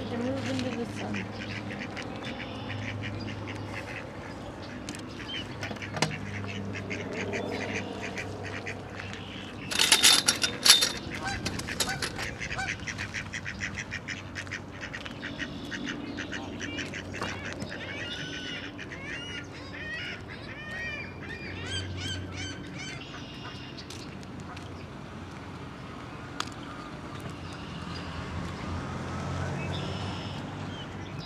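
Mallards quacking and Canada geese honking in a run of short calls, loudest in a burst about ten seconds in, over a low steady hum.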